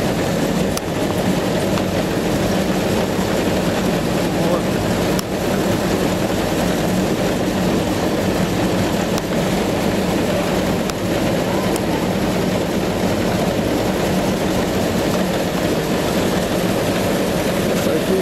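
Heavy farm machinery running steadily, a continuous loud mechanical din with a constant low hum.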